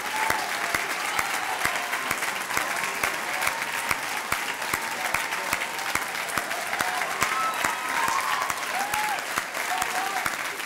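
Large audience applauding steadily, many hands clapping at once, with a few voices calling out above the clapping near the end.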